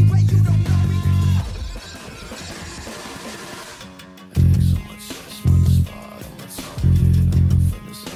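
Electric bass guitar, a Fender Precision Bass, playing a stop-start rock riff with a band's recording: a quick run of low notes, then about three seconds where only the quieter rest of the mix carries on, then three short punchy bursts of notes.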